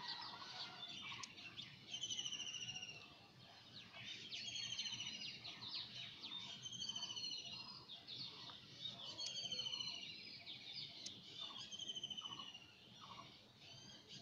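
A bird calling repeatedly in the background, a high, buzzy, slightly falling call about every two seconds, faint under a low hiss.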